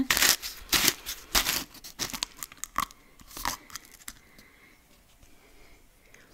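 Plastic screw lid of a Lush black pot being twisted and pulled off, a string of short scraping and crackling noises over the first three and a half seconds.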